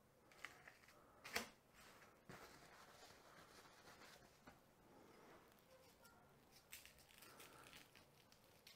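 Near silence, with a faint brief click about a second and a half in from the salmon fillet and paper towels being handled.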